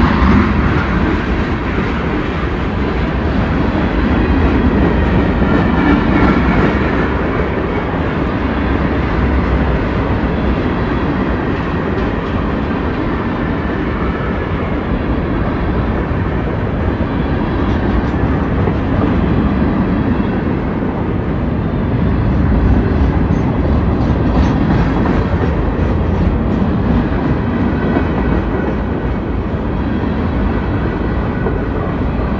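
Freight cars rolling past at close range: a steady, loud rumble and clatter of steel wheels on the rails.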